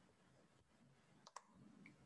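Near silence: faint room hiss with two quick, faint clicks close together a little past the middle.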